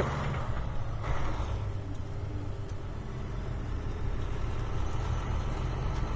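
Semi-truck diesel engine running with a steady low rumble, heard from inside the cab as the truck pulls through an intersection from a four-way stop, with a short hiss about a second in.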